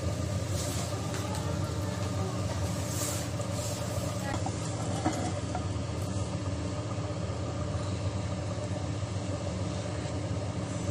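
A steady low machine hum, with a few faint light clicks in the first three seconds.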